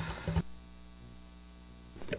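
Steady electrical hum, low and unchanging, with a ladder of even overtones; it settles in about half a second in, after a brief low bump.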